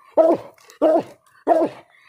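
Coon-hunting dog barking treed at a den tree: three short barks, evenly spaced about two-thirds of a second apart, the dog's signal that it has its quarry treed.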